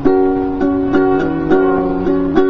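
Ukulele strummed in chords, a strum roughly every half second with the chord ringing between strums.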